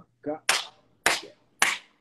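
Three sharp hand claps, evenly about half a second apart.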